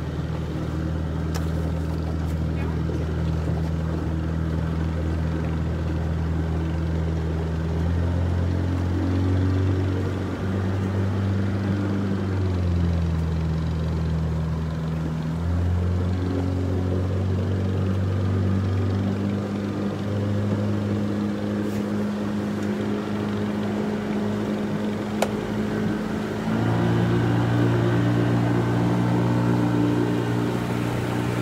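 Motorboat engine running steadily, its speed shifting up and down a few times, with a curved dip and recovery in the middle and a step up near the end.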